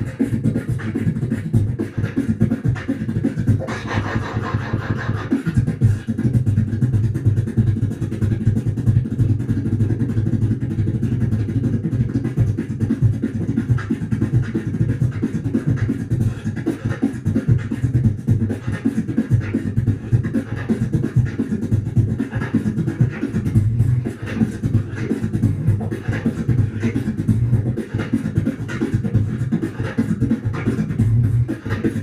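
Freestyle beatboxing into a handheld microphone: a continuous rapid run of vocal drum sounds with heavy bass, and a brief higher, noisier vocal sound about four seconds in.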